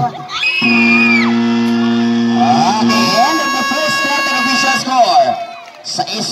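Basketball horn sounding a steady low note for about two seconds, then a second, higher steady tone for about two more, the end-of-period signal. Crowd shouts and whoops around it.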